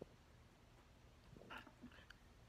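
Near silence: room tone, with a faint click at the start and a faint brief sound about one and a half seconds in.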